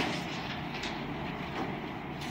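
Steady background noise of a meeting room, with faint rustling of papers being handled.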